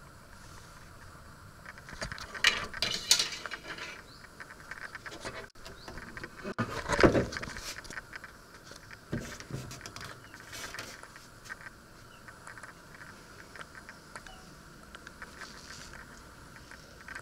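Irregular handling and movement sounds: rustles, light knocks and scrapes on wood, with a cluster of clatter a couple of seconds in and the loudest, fuller thump about seven seconds in, then scattered light clicks.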